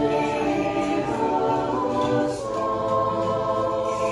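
Church choir singing an Orthodox liturgical hymn a cappella in slow, sustained chords. The chord moves to new notes about a second in and again about two and a half seconds in.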